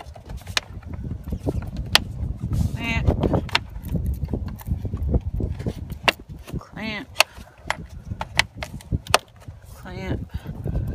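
Metal spring clamps on a 2010 Lexus IS250's engine air-filter housing being snapped shut onto the lid: a string of sharp clicks over rumbling handling noise. A short vocal sound comes about three seconds in and another near seven seconds.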